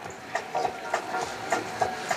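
Large printed paper sheets rustling and crackling in irregular small crackles as they are handled and unfolded, over faint steady street background.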